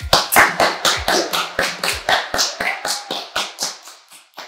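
Hands clapping in quick, even claps, about six a second, growing fainter near the end.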